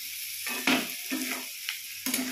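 Spiced potato cubes sizzling in oil in a granite-coated pan while a flat spatula stirs and scrapes them, with the masala fully fried. The spatula gives one louder scrape a little over half a second in and a short sharp one near the end.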